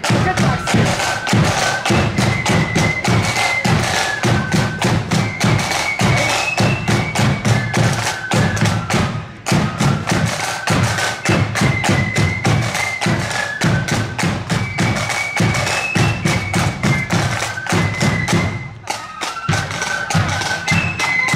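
Marching band playing a tune: a high-pitched melody over dense, heavy drumming, with brief dips in the music about halfway and near the end.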